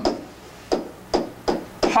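Stylus tapping on an interactive touchscreen display as a word is handwritten on it: about four short, sharp taps roughly 0.4 s apart, beginning under a second in.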